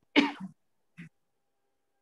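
A person's short vocal sound, loud and brief, then a fainter short one about a second later.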